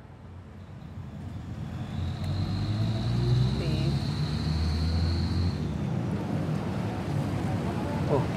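Road traffic noise: a low vehicle rumble that swells in over the first two seconds and stays steady, with a thin high whine through the middle.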